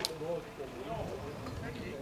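Indistinct voices of people talking nearby, with one sharp click right at the start.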